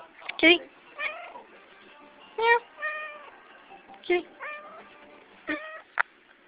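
Domestic cat meowing repeatedly, about four short calls roughly a second and a half apart.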